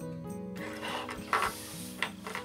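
Background music with held notes. From about half a second in, handling noise joins it, with a sharp clink about a second and a half in as metal sewing-machine presser feet are moved on a table.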